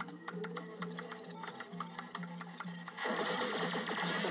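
Rapid computer keyboard typing, a quick run of sharp clicks, over a pulsing electronic film score. About three seconds in, the music swells louder and fuller.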